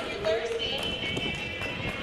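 Quad roller skates striding and rolling on a hard gym floor close to the microphone, giving a run of irregular low knocks, under music and crowd voices in a large hall.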